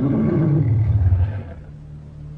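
Deep, low film-monster roar, wavering in pitch, that fades away about a second and a half in.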